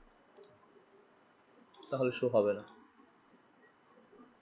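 A faint single click at a computer about half a second in, with a man saying one short word about two seconds in.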